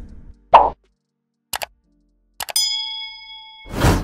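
Sound effects of an animated subscribe button: a short pop, two quick mouse-style clicks, then more clicks and a bright bell-like ding that rings for about a second and fades. A whoosh swells near the end.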